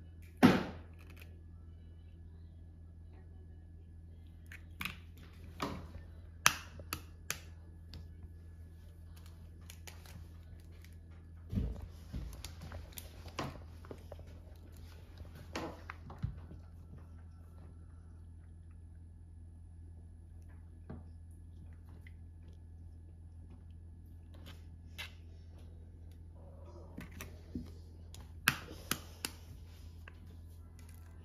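Eggs being cracked and separated by hand: scattered sharp taps and clicks of eggshells knocked and pulled apart over a plastic bowl, the loudest about half a second in and a cluster near the end. A steady low hum runs underneath.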